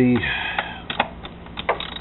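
Socket wrench ratcheting and clicking on a throttle-body mounting bolt: a short rasp, then several irregular sharp metal clicks.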